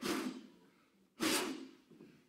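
Two short breaths into a handheld microphone, about a second apart.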